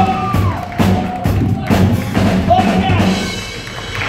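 Rock-and-roll band playing live, drums keeping a steady beat under held guitar or vocal notes; the music gets somewhat quieter in the second half.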